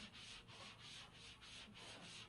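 Chalkboard being wiped with a handheld eraser: faint, quick back-and-forth rubbing strokes, about four a second.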